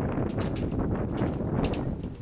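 Wind buffeting the camera microphone in a low, steady rumble, with a few light footsteps on a suspension footbridge's deck.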